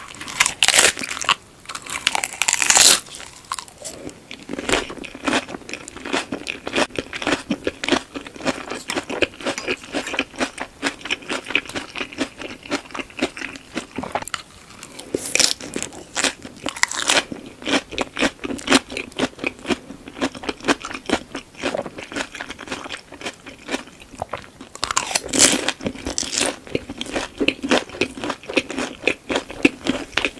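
Crisp green lettuce leaves bitten and chewed close to the microphone: a steady run of wet crunches, with louder bites near the start, about halfway through and a little before the end.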